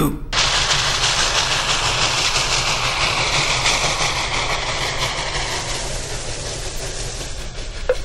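Cartoon suction sound effect of food being sucked up through a cardboard tube: a long, continuous rushing whoosh with a low rumble, starting abruptly and slowly fading over about seven seconds.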